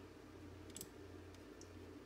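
Faint computer mouse clicks, a pair a little under a second in and a fainter one later, over quiet room tone with a steady low hum.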